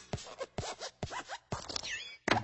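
A quick run of short scratching sounds, several a second, with the pitch sliding up and down, and a higher falling sweep near the end.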